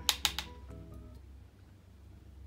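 A quick run of three or four sharp clicks in the first half-second, the handling of makeup containers or a brush on a compact, over soft background music.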